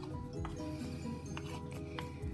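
Background music with steady held notes, and a few faint clicks of a spoon against a plastic mixing bowl as thick batter is stirred.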